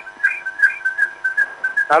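Short high chirps at one steady pitch, about five a second, on a telephone line while a call is being connected to the radio studio.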